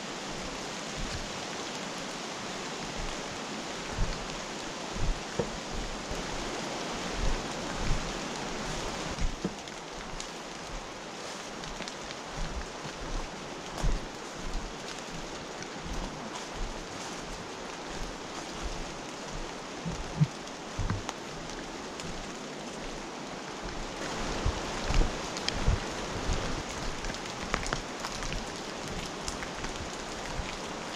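Footsteps and walking-stick strikes on a leaf-littered trail, an irregular soft thump about once a second, over a steady rushing hiss.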